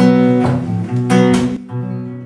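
Acoustic guitar strumming the closing chords of a song. A strummed chord rings, another stroke comes about a second in, then the last chord is left to ring and fade.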